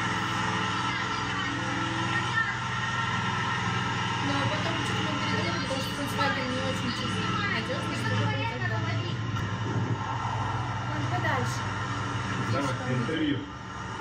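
Indistinct voices talking over a steady hum made of several even tones, which cuts off abruptly near the end.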